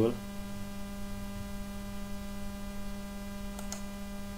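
Steady electrical mains hum picked up by the recording microphone, one constant low tone with fainter overtones. Two faint clicks come near the end.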